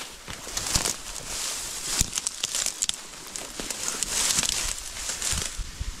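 Dense dry reeds rustling and crackling as they are trampled down underfoot, with many sharp snaps of breaking stems.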